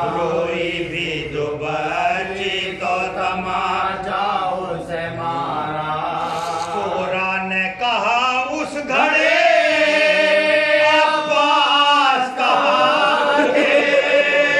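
Men chanting a marsiya, an Urdu elegy of mourning, unaccompanied: a lead reciter with a small group of men singing along in unison. It grows louder about nine seconds in, with long drawn-out notes.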